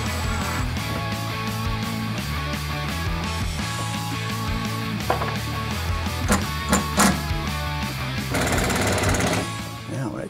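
Background rock music, with a Milwaukee cordless impact driver rattling as it drives screws into plywood in a short burst near the end, and a few sharp knocks a couple of seconds before.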